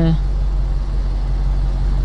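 Steady low rumble of a car engine idling, heard from inside the parked car's cabin.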